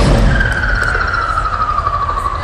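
A vocal performer's voice through the arena PA imitating a skidding car: one long squealing tone that slides down and then slightly back up, like tyres screeching, over a low rumble.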